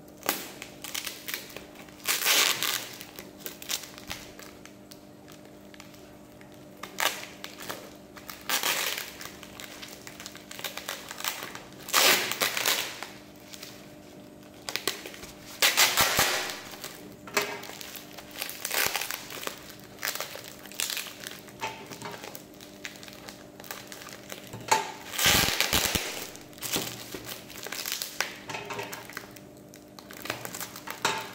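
Bubble wrap and plastic packaging crinkling and rustling in irregular bursts as a parcel is cut open with scissors and unwrapped by hand.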